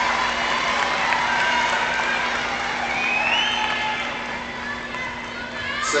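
Audience in a gymnastics arena cheering and applauding at the end of a floor routine, with shouting voices rising above the crowd noise.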